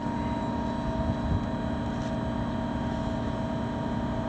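5-ton LG mini-split outdoor unit running steadily, its inverter compressor turning slowly and its condenser fans on: a constant hum with a few steady tones over an even whoosh of air.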